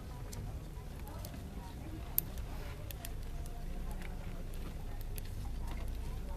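Wood bonfire crackling, with scattered sharp pops and one louder snap about two seconds in, over a faint murmur of voices.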